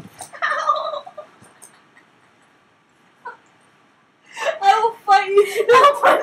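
Young women's voices: a short pitched vocal sound about half a second in, then, from about four seconds in, a loud burst of rapid, warbling, giggly laughter.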